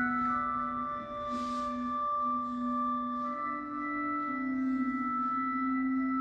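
Church organ playing slow, sustained chords whose notes shift every second or two, heard through a television speaker.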